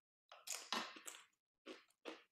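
A person biting into and crunching a crisp cracker, one crunch lasting about a second, then a brief second crunch near the end.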